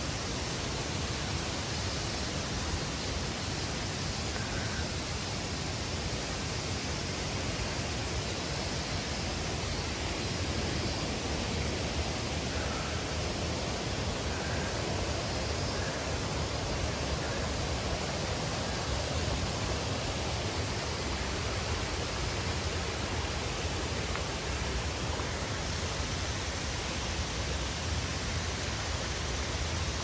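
Steady rush of flowing water, an even unbroken hiss.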